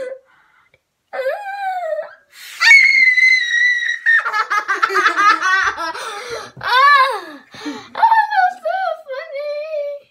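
A child screams into a stethoscope's chest piece. A short shout comes about a second in, then a long, loud, high-pitched scream from almost three seconds in, then both children break into loud laughter.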